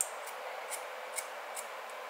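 Hair-cutting scissors snipping hair at the nape of a graduated bob: about five crisp snips, roughly two a second, over a steady hiss.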